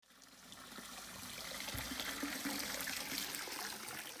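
Water trickling steadily, fading in over about the first second.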